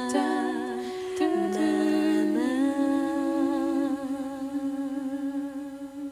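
A woman's unaccompanied voice humming slow, long-held notes with a slight waver, stepping down in pitch twice, then holding one long note that fades away near the end.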